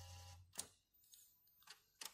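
Near silence: a faint low hum fades out about half a second in, then a few faint clicks.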